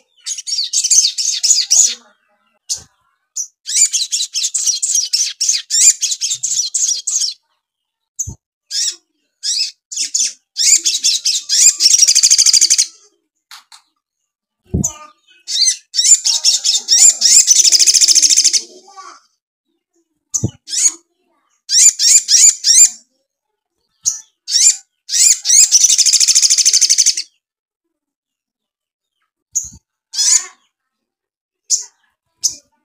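Caged male olive-backed sunbird singing: loud, rapid, high-pitched chattering phrases of one to four seconds each, separated by short pauses. Its song is filled with mimicked Eurasian tree sparrow chatter. Three brief soft knocks fall between the phrases.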